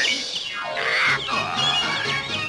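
Orchestral cartoon score playing, with a character's loud yell about a second in.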